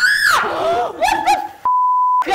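A young woman screaming in fright, breaking into a few short high cries about a second in. Near the end, a steady electronic beep tone cuts in.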